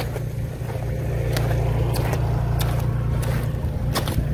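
A motor hums low and steady while water splashes and runs out of the slots of an 8-slot perforated corrugated drainage pipe near its inlet. A few small splashes stand out over the flow.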